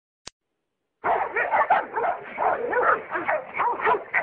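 A dog barking rapidly and without pause, starting about a second in after a single short click.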